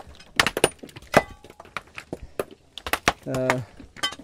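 Several sledgehammers striking rock by hand, breaking it small for a stone crusher: an irregular run of sharp knocks and cracks, several a second, one ringing briefly.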